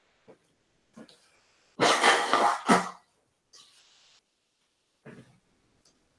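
A man coughing, a short burst about two seconds in, with a few faint brief sounds around it.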